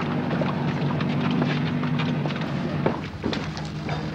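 A small boat's outboard motor running with a steady low drone, easing off a little about three seconds in.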